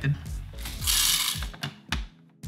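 A short rattling scrape as the plastic bean-hopper lid is fitted onto an espresso machine's grinder, about halfway through, with a few light clicks of plastic around it.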